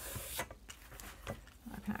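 A hand sliding over a folded sheet of paper with a brief soft rubbing hiss at the start, then faint rustles and light taps as the paper is handled on a cutting mat.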